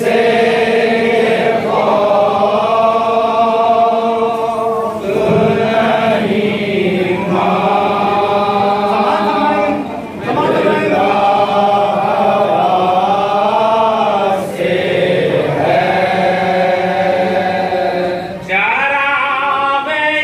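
A group of men chanting a noha, a Shia lament recited in Muharram, in unison. It goes in long held melodic phrases with short breaks between lines.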